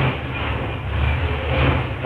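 Steady, fairly loud background noise: a dense hiss over a continuous low hum.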